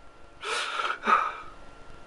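A man's two breathy, gasping breaths between words, the first about half a second in and a second, shorter one just after, as he weeps.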